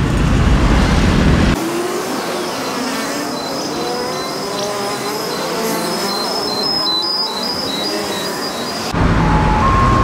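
Road traffic with passing motorcycles and cars. About a second and a half in, it cuts abruptly to the time-lapsed walk's audio sped up five times: thin, chirpy, high-pitched traffic noise with little low end and stepping high tones. Normal street traffic returns near the end.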